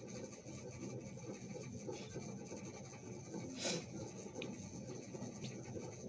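Faint rustling and handling noise in a quiet room, with one short soft hiss a little past halfway.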